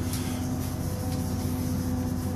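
Steady low hum with a few faint steady tones above it, the even drone of a running machine.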